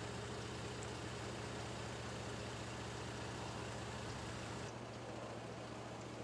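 A steady low mechanical hum with a fine pulsing rhythm, like an engine idling, under a faint hiss; the hiss thins about five seconds in.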